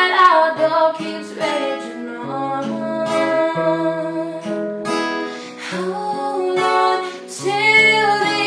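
A woman singing solo to her own acoustic guitar accompaniment.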